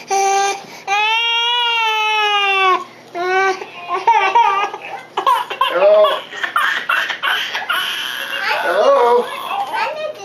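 A young child's long drawn-out wailing cries, the longest held for nearly two seconds with its pitch rising and falling slightly, followed by a busier jumble of children's cries, shrieks and voices.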